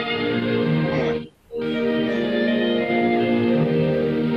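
Recorded music playing back from a computer media player: a long sustained chord that breaks off about a second and a half in, then another held chord.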